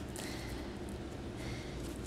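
Quiet room tone: a steady low hum and hiss with no distinct events.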